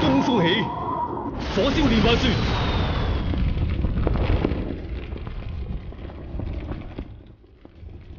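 Dramatic battle sound effects: voices crying out in the first second, then about a second and a half in a loud explosion with the roar of fire that slowly dies away over the following seconds.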